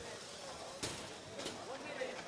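Low background noise of a robotics competition hall, with faint voices and two brief knocks about a second and a second and a half in.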